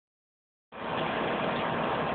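Steady hiss and patter of a water jet spraying into a backyard above-ground pool, starting abruptly about two-thirds of a second in.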